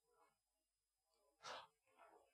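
Near silence in a lecture room, with one short, faint breath about one and a half seconds in.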